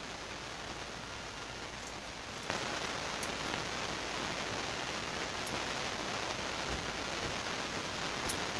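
Steady hiss of falling water, which suddenly gets louder about two and a half seconds in and stays loud, with a couple of faint clicks.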